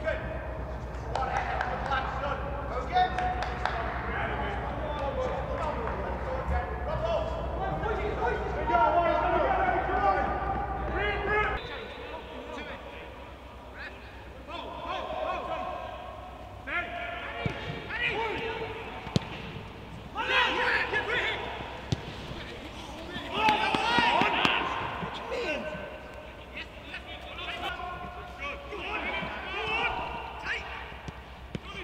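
Footballers shouting and calling to each other on the pitch, in short bursts, with no crowd, and the sharp thuds of the ball being kicked now and then.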